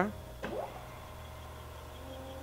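A push-button click about half a second in, then the workhead motor of a Jones & Shipman 1300 tool room grinder starting: a brief rising whine that settles into a steady running hum.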